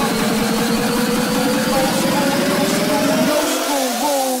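Hardstyle track in a build-up: a fast buzzing low pattern under a slowly rising synth tone, with the low end cutting out about three seconds in.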